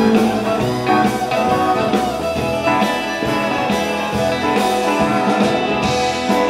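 Live honky-tonk band playing an instrumental break, guitar to the fore over upright bass and drums.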